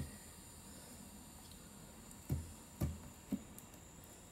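Three soft knocks about half a second apart, from hands handling a removed valve cover on a wooden workbench, over faint room tone.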